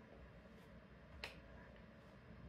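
Near silence: room tone, with one faint sharp click a little past a second in.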